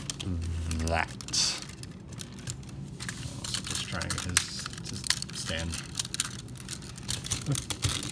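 Hard plastic parts of a Transformers toy robot clicking and knocking as hands handle and adjust it around the hips and legs, a run of small irregular clicks that grows denser in the second half.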